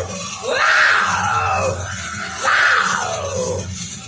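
Hard rock song: a male singer gives two harsh, rising screams over the backing track, about half a second and two and a half seconds in.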